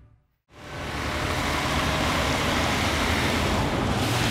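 After a brief silence, a steady rushing noise of truck traffic on a quarry road mixed with wind fades in about half a second in and holds.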